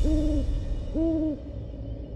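An owl hooting twice, about a second apart, over a low steady rumble.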